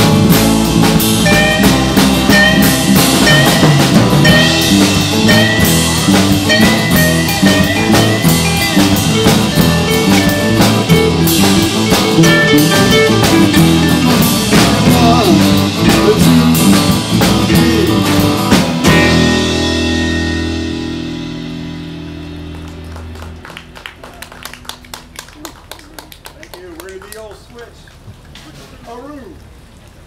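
Live band of amplified acoustic guitars and drum kit playing a blues-style song. About two-thirds of the way through it ends on a final chord that rings out and fades over a few seconds, leaving faint voices and scattered small knocks.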